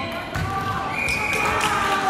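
Volleyball game in a large hall: players' and spectators' voices, a sharp thud about half a second in, and short high squeaks scattered through, all with hall echo.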